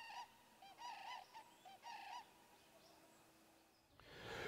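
Common cranes calling faintly: a run of short rising-and-falling calls in quick succession, stopping about two seconds in.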